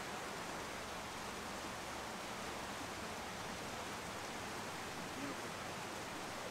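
Steady rush of a creek running over rocks.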